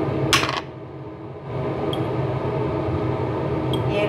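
A brief clink of metal kitchenware, such as a utensil against a cooking pot, about a third of a second in. A steady low hum continues underneath.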